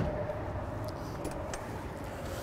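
The fading end of a motorhome storage compartment door slamming shut, then low steady outdoor background noise with a faint hum and a few faint clicks.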